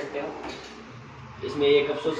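Soft-close tandem box kitchen drawer being pulled open on its runners.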